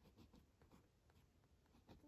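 Mechanical pencil scratching on sketchbook paper in a series of short, very faint strokes.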